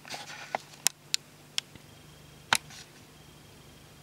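A few short, sharp clicks over a faint rustle, the loudest about two and a half seconds in.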